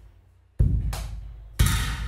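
A percussion loop sample auditioned in FL Studio's browser: two hard drum hits about a second apart, each with a deep low end and a tail that fades out.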